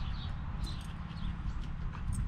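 Small birds chirping in short, repeated calls over a steady low rumble.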